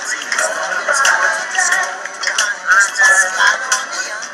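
Several video soundtracks playing at the same time, their music and voices overlapping into a dense jumble with no single sound standing out.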